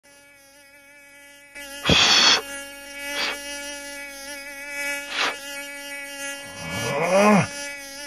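Steady, high-pitched mosquito whine that grows louder about one and a half seconds in, broken by a loud sudden noise about two seconds in and shorter ones a little later.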